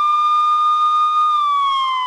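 Police car siren wailing: one high tone held steady, then beginning to fall in pitch near the end.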